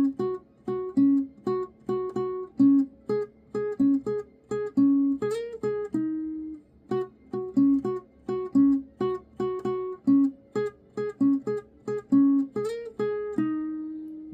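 Acoustic guitar playing a single-note melody, plucked notes about two to three a second, with a short slide up the neck about five seconds in and again near the end.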